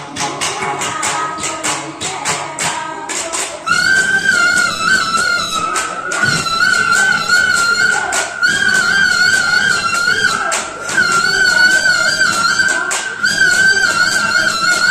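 Live Bihu folk music from a women's troupe: singing over quick, evenly repeated hand-percussion strikes, and about four seconds in a high, slightly wavering sustained melody line comes in and carries on over the rhythm.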